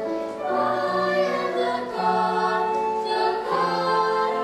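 A choir singing in a stage musical, the voices holding long notes that change pitch about once a second.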